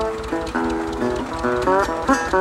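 1933 National Duolian steel-bodied resonator guitar played blues-style with a bottleneck slide: plucked notes, then sliding, wavering notes near the end. Underneath runs the steady low beat of an idling Bolinder-Munktell Victor two-cylinder tractor engine, used as the rhythm.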